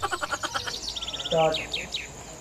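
Small birds chirping: a quick high trill about a second in, then a few short falling chirps near the end. A brief voice sound falls between them, and a rapid chattering sound fades out at the start.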